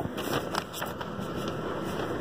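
Breathy blowing into a simple wooden flute that mostly gives air noise, with a faint thin steady tone in the second half. A few light clicks from fingers on the pipe in the first second.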